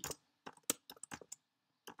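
Computer keyboard being typed on: a handful of separate keystroke clicks at an uneven pace, with a short pause before one last keystroke near the end.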